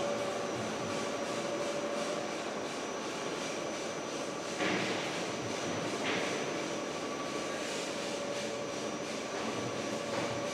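Cable tray roll forming machine running, its forming rollers and gears turning as a perforated steel sheet feeds through: a steady machine hum with a faint whine. Two short louder knocks come about four and a half and six seconds in.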